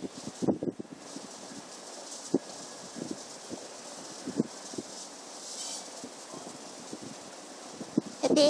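Quiet outdoor ambience: a steady hiss with a few soft, scattered knocks.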